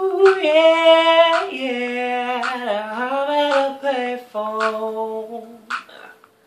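Male a cappella vocals carrying a melody with no clear words, the pitch stepping up and down, with short hissing 's' sounds about once a second. The voices stop just before the end.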